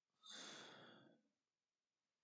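One breathy exhale, a sigh, lasting about a second.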